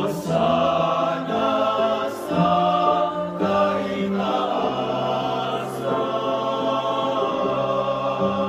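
Small male vocal ensemble singing a cappella in close harmony, holding chords that change every second or so, with a few brief sibilant consonants.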